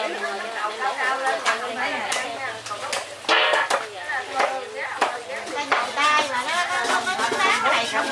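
Background chatter of several people talking at once, with scattered sharp clicks and knocks from food preparation.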